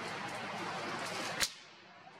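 Steady outdoor background hiss, then a single sharp crack about one and a half seconds in, after which the background abruptly drops much quieter.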